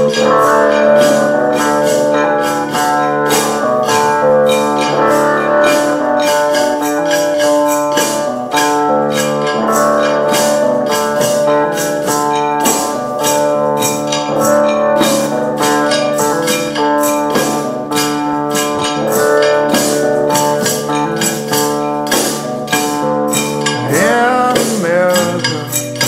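Live acoustic band music: a guitar playing chords with held notes over them, and a tambourine keeping a steady beat of about three strokes a second. A singing voice comes in near the end.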